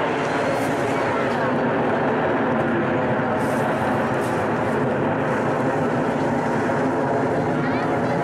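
Steady jet engine noise from a formation of nine BAE Hawk T1 jet trainers flying overhead trailing smoke, with voices underneath.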